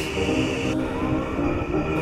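Background music with long held notes, and a steady hiss behind it that stops under a second in.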